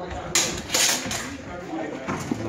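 Steel longswords striking each other in a fencing exchange: one sharp clash about a third of a second in, then a louder flurry of clashes around the one-second mark.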